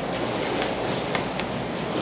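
Steady rushing background noise of a classroom with no one speaking, with two faint ticks a little past halfway.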